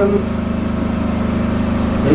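A steady low hum with a fast, even pulse, running unbroken through a pause in the speech.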